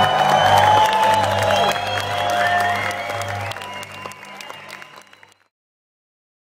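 Loud club music with a heavy bass beat and a crowd cheering and clapping over it, recorded on a phone from inside the crowd. It fades out and cuts to silence about five seconds in.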